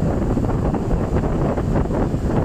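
Strong monsoon wind buffeting a smartphone microphone in loud, irregular low rumbling gusts, with rough surf breaking on the beach beneath it.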